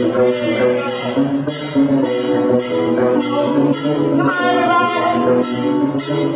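Live band playing loud: electric guitar chords, bass guitar and drum kit, with a cymbal struck on a steady beat about twice a second.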